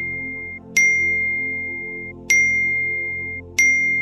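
Phone text-message notification ding, a single high ringing tone that fades, sounding three times about a second and a half apart: new messages arriving. Steady background music plays under it.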